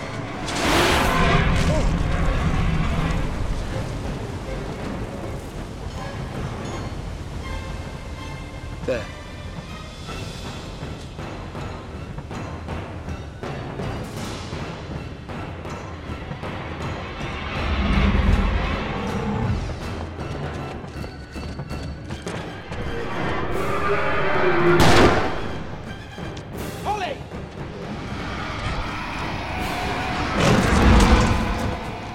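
Film soundtrack of an action chase: orchestral score running throughout, swelling several times into deep booming hits, with a single word spoken about nine seconds in.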